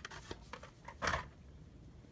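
Faint handling noise from a Hot Wheels car's card and plastic blister pack: a small click at the start, then one brief rustle about a second in.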